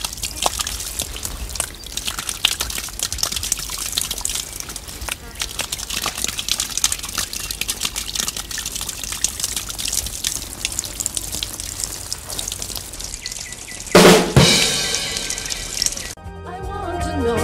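Water jet from a garden tap, forced through a bent plastic straw set in a cork, spraying upward and splashing down steadily. About two seconds before the end a loud sudden sound cuts in and music begins.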